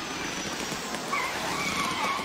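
Space shuttle orbiter rolling out on the runway after landing: a steady rushing noise, with a faint wavering tone in the second half.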